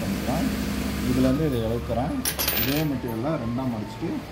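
A brief metallic clatter about two seconds in, like small metal items jingling on the sewing table, over a man's voice talking.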